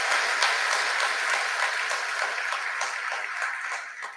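A large seated audience applauding: dense, steady clapping that tails off near the end.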